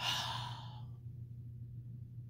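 A woman's long, breathy sigh that starts suddenly and fades out within about a second, a sigh of delight at the scent of lotion just rubbed on her arm.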